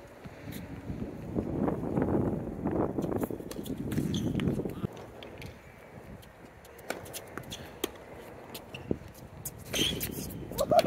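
Tennis ball being hit by rackets and bouncing on a hard court during a rally: a series of sharp, separate pops, the loudest near the end.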